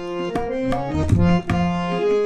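Instrumental music: tabla strokes, with the low drum bending in pitch, over held melody notes.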